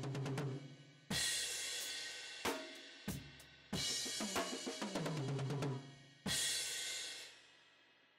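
Drum kit played in fast fills of inverted paradiddles as triplets: rapid strokes stepping down in pitch across the drums, each run landing on a crash cymbal with the bass drum. This happens three times, and the last crash dies away shortly before the end.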